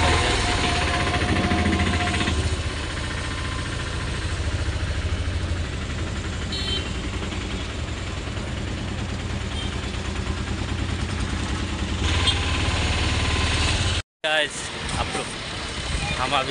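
Auto-rickshaw engine running with a steady low throb, heard from inside the cab while riding in traffic, with a steady whine over the first couple of seconds. The sound breaks off abruptly near the end.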